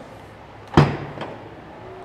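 Power-operated trunk lid of an Aurus Senat unlatching when its opening button is pressed: a single sharp clunk about three-quarters of a second in.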